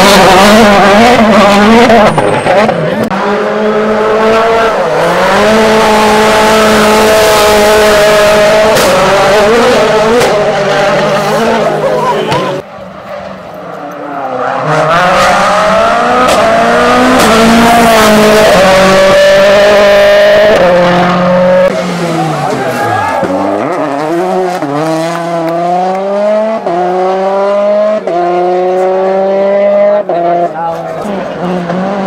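Rally car engines at full throttle, each rising in pitch and dropping sharply at each upshift, gear after gear: first a Citroën DS3 WRC on gravel, then, after an abrupt cut about 13 seconds in, a Ford Fiesta rally car on tarmac.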